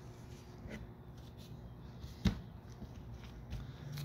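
Faint rubbing and handling of a gloved hand gathering excess glazing putty off window glass, with a single sharp knock a little past halfway.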